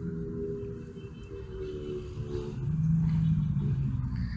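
A motor vehicle's engine running nearby: a low rumble with a steady hum that drops to a lower tone a little past halfway.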